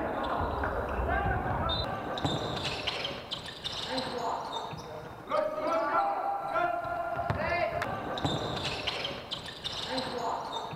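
Basketball game sounds in a sports hall: a ball bouncing on the court, mixed with players' voices calling out.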